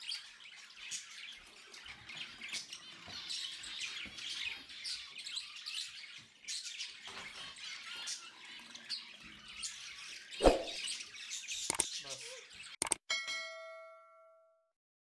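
Small birds chirping over and over, with a single knock about ten seconds in. Near the end come a couple of sharp clicks and a ringing, bell-like ding: a subscribe-button sound effect.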